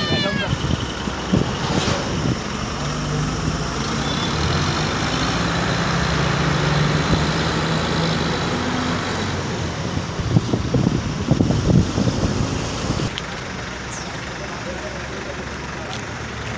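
Roadside noise of a vehicle engine running, with people's voices. A low steady engine tone holds through the first half, and a cluster of sharp knocks comes about two-thirds of the way in.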